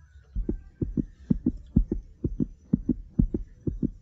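Heartbeat sound effect: short, low thuds in quick pairs, about two pairs a second, keeping an even, fast rhythm.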